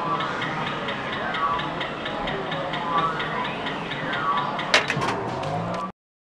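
Arcade machine electronic jingles playing over a rapid, steady ticking, with a short cluster of sharp clicks about three-quarters of the way through. The sound cuts off abruptly just before the end.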